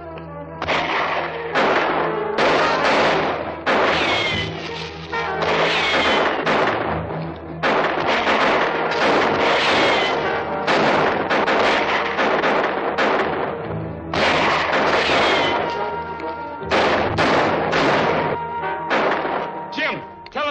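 A gunfight: a long run of gunshots, about two dozen, coming in uneven clusters, several trailing a short falling whine, over dramatic background music.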